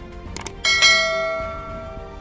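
Subscribe-button overlay sound effect: two quick mouse clicks, then a bright notification bell chime that rings out and fades over about a second and a half.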